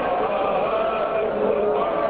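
A crowd of voices chanting together, many overlapping men's voices at a steady level.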